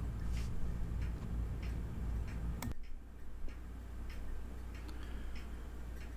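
Faint ticking, about two ticks a second, like a clock, over a low steady hum. A little under halfway through, a click comes with a sudden change in the background hum.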